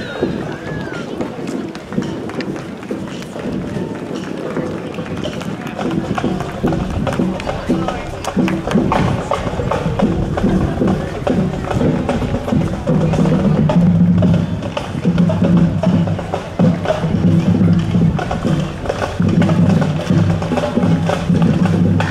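High school marching band playing, with drums beating under a band tune. The music grows louder from about halfway through as the band comes closer.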